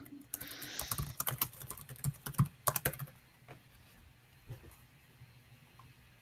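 Typing on a computer keyboard: quick runs of key clicks for about three seconds, then a few scattered clicks.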